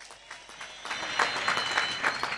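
Crowd applauding: the clapping swells over the first second and then holds strong.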